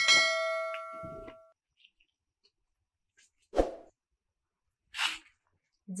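A single bright metallic ding, struck once at the start and ringing out for about a second and a half. Later come two brief soft bumps and rustles of cloth being handled.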